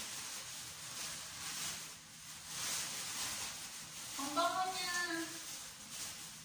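Thin plastic shopping bag rustling and crinkling as it is handled. A brief voice sound comes about four seconds in.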